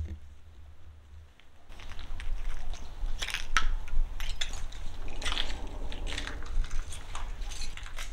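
Footsteps crunching over debris, irregular crunches and crackles starting a little under two seconds in, over a low rumble.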